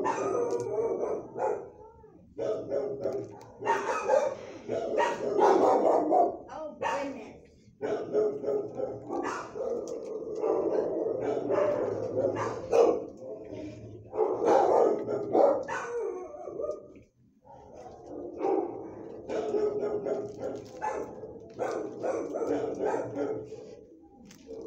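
Dogs barking in a shelter kennel, nearly without pause, with brief lulls about 2, 8 and 17 seconds in.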